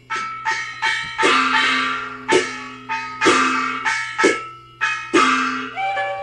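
Gezaixi opera percussion section playing an instrumental passage: sharp metallic strikes of gongs and cymbals in an uneven rhythm, about ten in all, each ringing and fading. A steady low hum from the old radio recording lies underneath.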